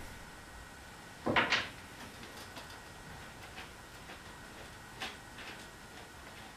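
A short clatter about a second and a half in, then a few faint scattered clicks: a bicycle saddle's seat-post clamp and its Allen bolts being handled and taken apart by hand.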